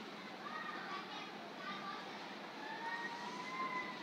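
Faint distant voices in the background, with one long drawn-out call in the second half.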